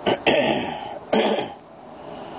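A person coughing hard three times: a short cough, a longer one that fades, then another about a second in.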